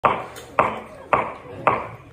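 Metronome clicking a steady beat: four sharp clicks about half a second apart, counting in before the trombone starts.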